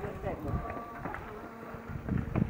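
A bee buzzing among the flowering shrubs, its hum coming and going and shifting in pitch, with people talking faintly in the background.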